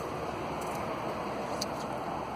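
Steady outdoor background noise, an even hiss with no distinct source, with a few faint high ticks.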